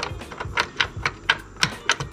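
A string of sharp, irregular clicks, about four a second, from a hand handling the metal chassis and circuit board of an opened Yamaha RX-V661 AV receiver.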